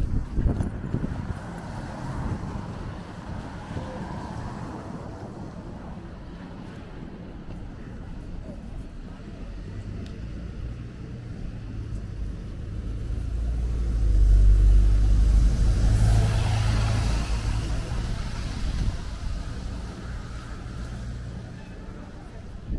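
Street traffic on wet roads: cars and a city bus pass close, with a deep engine rumble that grows and is loudest about two-thirds of the way through, then a hiss of tyres on wet pavement.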